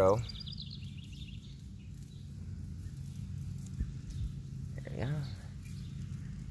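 A steady low hum, with a short run of high chirps from a bird in the first second or so; a man's voice near the end.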